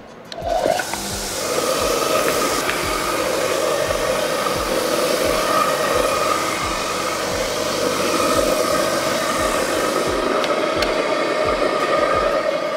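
Large JOST Big Boy orbital sander starting up and then running steadily while it sands a solid-surface mineral-material panel, with the dust extraction drawing through its hose.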